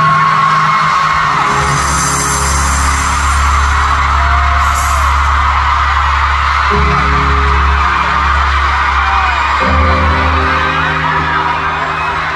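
Live arena concert music: sustained low chords that change every few seconds, under a loud crowd of fans screaming and singing along.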